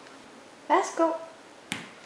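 Two short voice-like sounds about two-thirds of a second in, then one sharp snap near the end.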